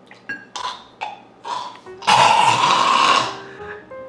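A person making a loud, drawn-out throaty gagging sound of disgust about two seconds in, lasting just over a second, after a few short, quieter mouth and throat noises.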